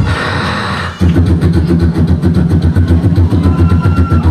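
Live beatboxing through a hand-cupped microphone and the venue's PA. A second of hissing noise gives way to a rapid, driving rhythm of deep, buzzing bass pulses with sharp click and snare sounds over them, and a short held whistle-like tone near the end.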